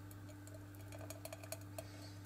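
Thick, hot strawberry jam pouring from a plastic jug into a glass jar: faint, irregular soft ticks and plops that come more often in the second half, over a steady low hum.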